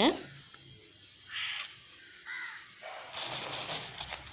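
A crow cawing twice, about a second apart, then a soft rustling noise in the last second.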